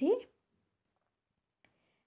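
A woman's voice trails off with a rising tone in the first quarter second, then near-total silence with one faint click near the end.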